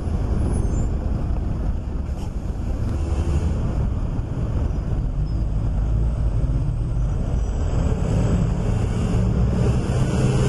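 Urban road traffic: a steady, low rumble of cars and a bus in the street.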